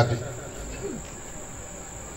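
A pause in the talk filled by room noise with a steady high-pitched whine or trill throughout, and a faint short voice-like sound just before a second in.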